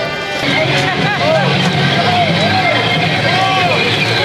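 Several voices shouting and whooping in rising-and-falling calls over street-crowd noise, starting about half a second in.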